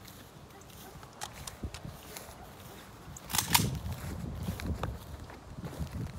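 Footsteps of someone walking over dirt and grass, with low wind and handling rumble and scattered sharp clicks, the loudest a quick double click about three and a half seconds in.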